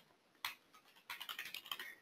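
Faint typing on a computer keyboard: a single keystroke about half a second in, then a quick run of keystrokes in the second half.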